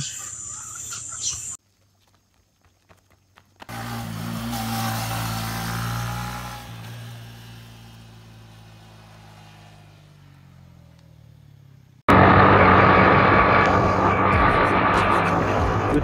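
A short silence, then an intro sting: a swell with a low steady drone that fades away over several seconds. About twelve seconds in it cuts suddenly to a motorcycle running on the road, engine and wind noise loud and steady.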